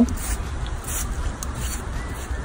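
A few short hisses of a trigger spray bottle spraying cleaner onto an AC vent grille, over a steady low rumble.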